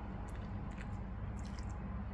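A wet wipe being rubbed over a poodle's paw: a few brief, faint rustling scrapes, the last and busiest about one and a half seconds in, over a steady low hum.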